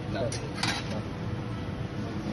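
Steady low roar of hot-shop equipment, gas burners and blowers running, with a brief sharp noise just after half a second in.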